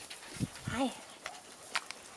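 A woman's voice saying "Hi" once, softly, to a puppy, just after a short low thump, with a few faint clicks later on.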